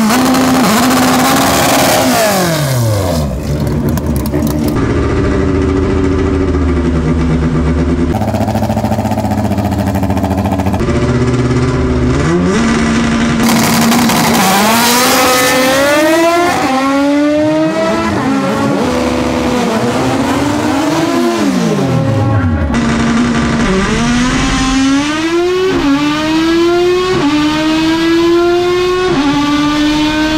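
Naturally aspirated Honda Civic hatchback drag car making a full-throttle pass: the engine revs climb steeply and drop back at each upshift, over and over. Near the end, heard from inside the cabin, the shifts come in quick succession about every one to two seconds.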